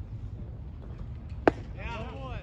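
A baseball pitch popping into the catcher's mitt: one sharp crack about three quarters of the way through, over a steady low rumble of wind on the microphone. Just after it a voice starts calling out.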